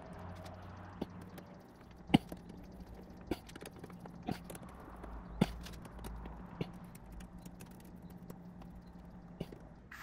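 Hand screwdriver tightening the screws of a soft-top frame's side rail: sharp metallic clicks roughly once a second, the loudest about two seconds in, then fewer toward the end.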